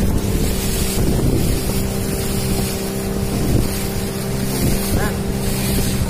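The engine of a wooden outrigger boat under way, humming steadily, with wind buffeting the microphone and water rushing past the hull.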